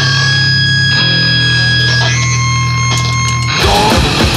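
Grindcore/powerviolence band recording: distorted electric guitar notes ring and sustain over a held bass note, shifting pitch about once a second. Near the end the drums and full band crash in at a fast tempo.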